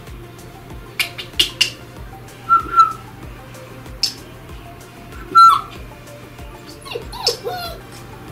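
A puppy making short high squeaks and yips a few times, then a louder burst of whining near the end, with a few sharp clicks about a second in.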